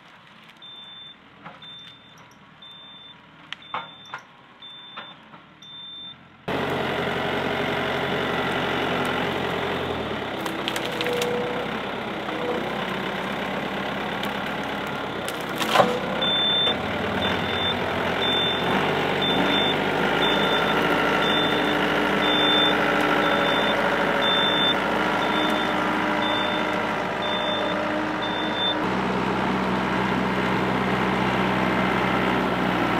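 Yanmar compact tractor's diesel engine working, faint for the first six seconds and then loud and steady close by. Its reversing alarm beeps a little under twice a second at the start and again through most of the second half, and a single sharp knock comes near the middle.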